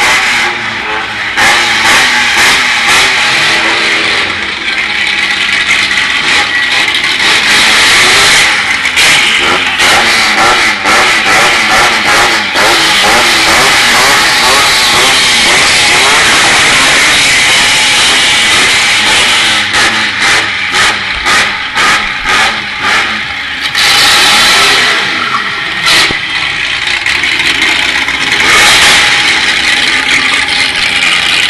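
Car engines revving hard and constantly rising and falling in pitch as the cars spin in circles for the crowd. About two-thirds of the way through, an engine revs in a quick series of short bursts, about two a second.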